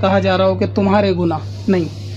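A person speaking in Hindi/Urdu, with a steady low hum underneath.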